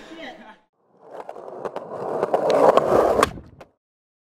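Skateboard wheels rolling on pavement, growing louder, with a run of sharp clicks, then cutting off suddenly near the end.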